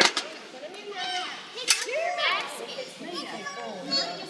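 Several young children's voices chattering and calling out over one another, with a few sharp knocks, the loudest about one and a half seconds in.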